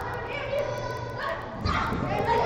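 Players shouting and calling to each other across an indoor five-a-side pitch, echoing in the hall, with a thud about three-quarters of the way through.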